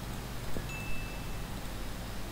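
Low background hum and hiss with two faint computer mouse clicks around half a second to a second in, and a brief thin high ping lasting under a second.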